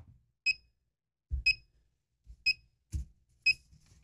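Carbon dioxide meter's alarm beeping, four short high beeps one second apart, with a few soft low bumps between them. The alarm signals a carbon dioxide reading above its danger threshold, over 6,000 ppm, from the air trapped inside an N95 mask.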